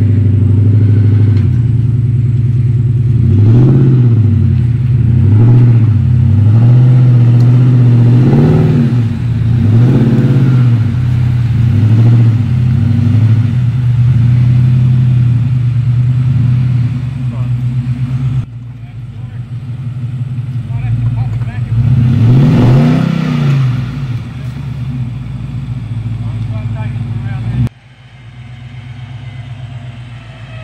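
Nissan Y62 Patrol's V8 engine under heavy load as it tows a bogged caravan through mud, revving up and falling back again and again. The engine note drops about two-thirds of the way through and falls off sharply near the end.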